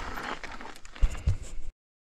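Faint rustling with two dull thumps close to the microphone just after a second in, then the sound cuts off abruptly to dead silence.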